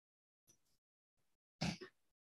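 Near silence, then near the end one brief grunt-like vocal sound from a person, lasting about a third of a second.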